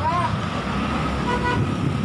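Street traffic with vehicle engines running steadily, and a short horn toot about one and a half seconds in.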